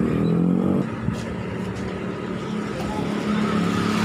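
A motor vehicle's engine runs steadily close by, then drops away about a second in, leaving rough street traffic noise; a steady engine hum returns near the end.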